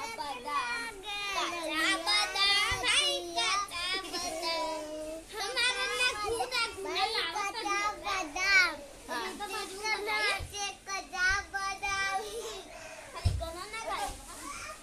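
High-pitched young children's voices chattering and calling out almost without a break, with a short low thump near the end.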